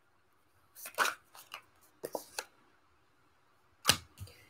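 A deck of tarot cards being shuffled by hand: short, crisp card snaps in small clusters about half a second apart, with a sharper snap near the end.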